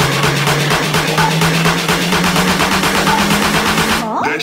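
Electronic music build-up: a fast pulsing beat under a low synth tone that slowly rises in pitch, with a short higher blip about every two seconds.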